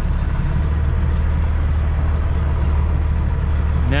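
Semi-truck's diesel engine running at low revs as the truck creeps through a yard, a steady low drone heard from inside the cab.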